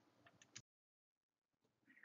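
Near silence: faint room tone with a single faint click about a quarter of the way in.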